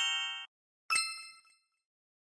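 Chime sound effects for an animated logo: a quick rising run of bell tones that cuts off about half a second in, then a single bright ding about a second in that rings briefly and fades.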